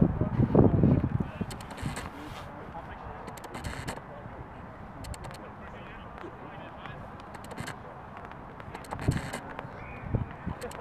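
Rugby players shouting on the pitch over steady outdoor background noise. There is a loud shout in the first second and another about nine seconds in.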